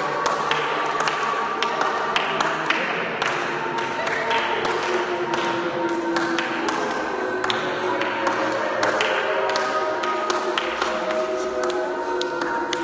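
A group dancing on a hard floor: a dense, irregular patter of footfalls, stamps and taps, over several long held pitched tones that slowly shift in pitch, like a group of voices sustaining notes.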